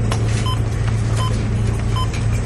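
Welch Allyn Propaq LT patient monitor giving a short beep with each pulse beat, about every three-quarters of a second, in step with the pulse rate of 80 on its display. Under it runs a steady, louder low hum of running machinery.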